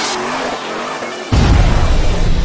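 Produced intro sting: a car sound effect over electronic music. A loud, deep rumble cuts in suddenly a little past halfway.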